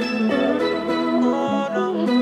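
Background music with held chords and notes that change every half second or so.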